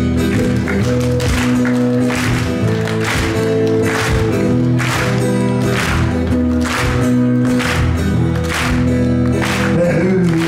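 Live acoustic guitar strumming steady chords, about two strums a second, heard through the stage PA.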